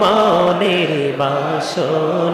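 A man chanting zikir into a microphone in long, drawn-out notes, the melody stepping down in pitch in stages, with a brief break near the end before the voice goes on.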